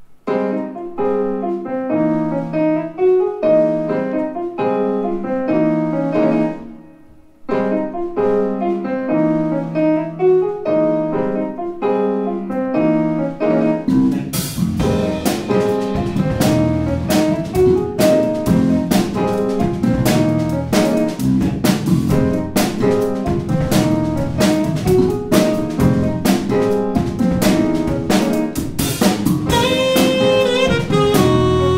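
Jazz piano on a Kurzweil digital stage piano, playing chords alone with a brief pause about six seconds in, then the drum kit and the rest of the rhythm section join about halfway through and keep a steady beat under the piano.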